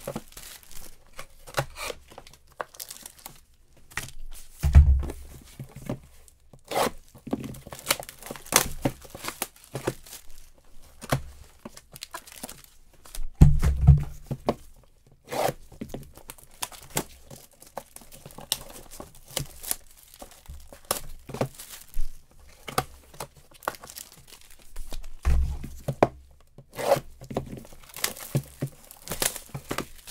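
Clear plastic shrink-wrap being torn and crinkled off sealed trading-card hobby boxes, in a quick run of sharp crackles. Three dull thumps, the loudest sounds, come about five seconds in, near the middle, and a few seconds before the end.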